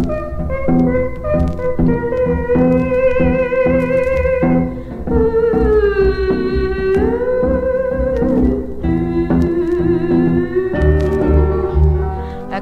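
Instrumental break of a country-and-western song: a sustained lead melody with vibrato and slow slides between held notes, over steadily strummed rhythm guitar and bass.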